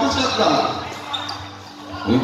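Basketball bouncing on a hard court amid people's voices, with a few short knocks early on. Everything grows quieter in the second half.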